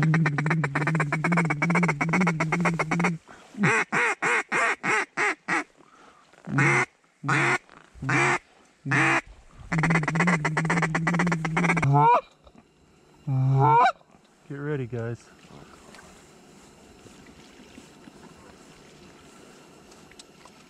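Goose calls blown close by at an incoming flock of Canada geese. A long held note of about three seconds, a quick run of about eight short honks, then several spaced honks and a second long held note. A few broken, bending honks follow about twelve seconds in, and the calling stops after about fifteen seconds.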